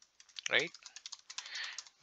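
Computer keyboard typing: a quick run of key clicks.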